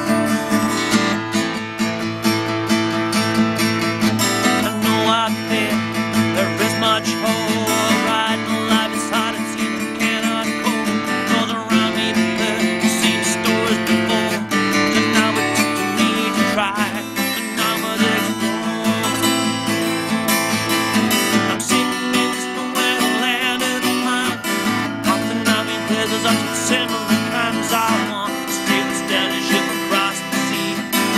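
Acoustic guitar strummed steadily in an instrumental passage of a song, its chords changing every few seconds.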